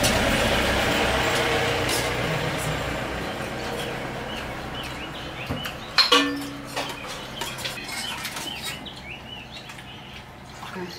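A broad rushing noise, loudest at the start, fades away over about five seconds. After a sharp knock about six seconds in, small birds chirp over and over.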